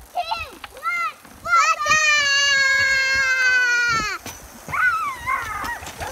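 A dog whining in short rising-and-falling cries, then howling once for about two and a half seconds, the howl sliding slowly down in pitch, with more wavering cries near the end.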